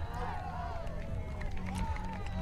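Several distant voices of players calling and shouting on an open beach field, overlapping one another over a low steady outdoor rumble.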